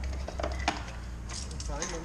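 A few light clicks and rustles of hands working in a car's engine bay, over a steady low hum, with a faint voice near the end.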